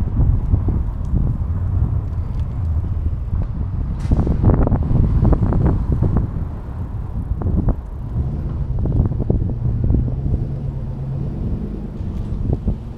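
Wind buffeting the microphone of a camera moving along a street: a loud, uneven low rumble that comes and goes in gusts, with one brief sharper rush of wind about four seconds in.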